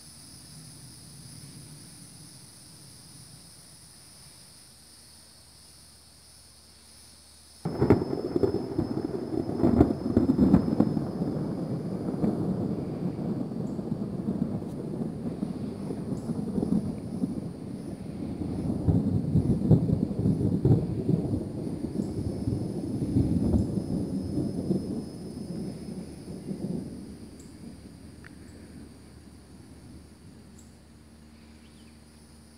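A single thunderclap comes about eight seconds in: a sudden loud crack, followed by a long rumble that swells again partway through and dies away about twenty seconds later.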